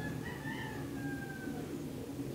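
A rooster crowing once in the background: a single call about one and a half seconds long that rises at first, then holds and slides slightly down before cutting off, over a steady low rumble.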